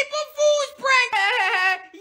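A high-pitched, childlike voice wailing in exaggerated crying, in about four drawn-out, wavering sobs.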